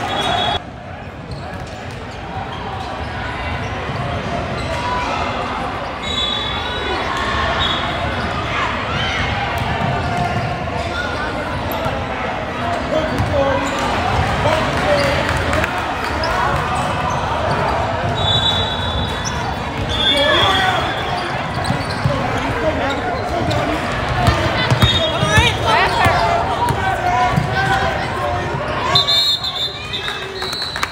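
A basketball being dribbled on a hardwood gym court, with voices of players and spectators echoing in the hall and several short high squeaks scattered through.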